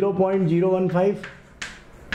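Chalk clicking on a blackboard as numbers are written, with one sharp tap about one and a half seconds in. A man's voice holds one long word over the first second.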